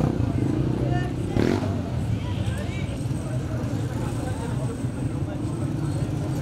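Busy market-street background: a steady low engine rumble with scattered voices of people talking nearby.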